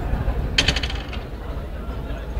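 A quick jingle of small metal pieces clinking together, about ten sharp ringing clinks in just over half a second, starting about half a second in.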